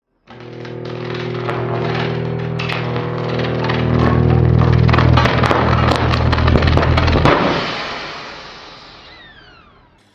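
End-card outro sound: a steady low droning chord with sharp crackling clicks over it. It builds to a loud peak about halfway through, then fades away, with falling whistling tones near the end.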